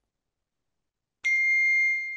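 Debate timer's chime: a single bright ding that starts sharply about a second and a quarter in after silence, then rings on and fades slowly.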